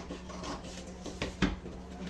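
Scissors cutting through a paper pattern, with the paper rustling and rubbing on the table, and two sharp clicks a little over a second in.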